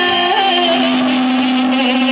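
Live band music in a large hall: a long sustained chord held through, with a high note that wavers in pitch over a steady low tone.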